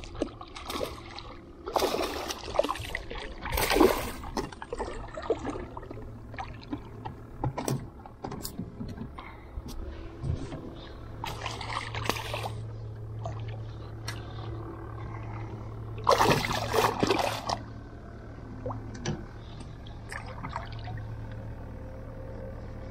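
A hooked spotted seatrout thrashing and splashing at the water surface during the fight, in several separate bursts: a couple of seconds in, again at about four seconds, near the middle, and a longer bout about two-thirds of the way through.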